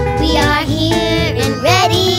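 Background music: a song with a sung vocal melody over a steady bass line.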